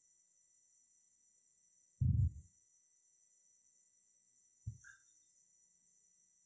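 Two dull, low thumps in an otherwise quiet room, about two and a half seconds apart; the first is short and loud, the second smaller.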